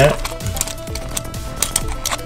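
Several short, sharp plastic clicks as a small Transformers One Step Changer toy is handled and snapped between modes by hand.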